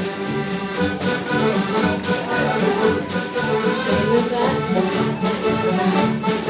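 Folk dance band playing a lively dance tune with a steady beat.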